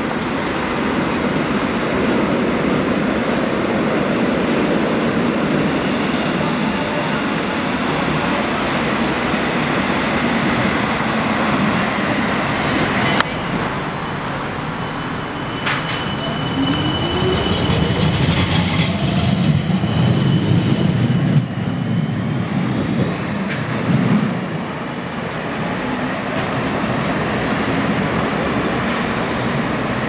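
Siemens Combino low-floor trams running through a covered, sunken tram stop: steady rumble of wheels on rail, with a thin high wheel squeal in the first part as a tram takes the curve. In the second half a tram pulls away, its motor whine rising in pitch as it accelerates, with a sharp click a little before.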